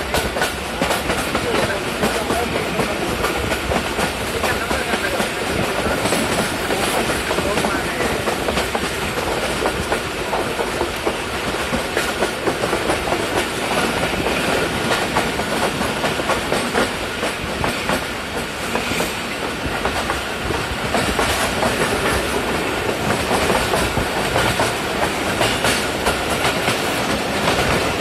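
A moving train heard from inside the carriage: a steady running rumble with frequent clicking of the wheels over the rails.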